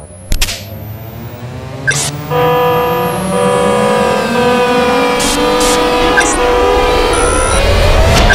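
Cinematic title sound design: a sharp hit about a third of a second in and another at about two seconds, then a sustained synthesized drone of many layered steady tones, with a rising sweep building from about five seconds in.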